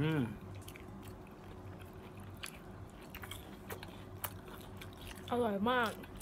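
Close-up chewing of fried mozzarella cheese sticks: quiet mouth sounds with a few faint clicks over a low steady hum. A voice says "very delicious" near the end.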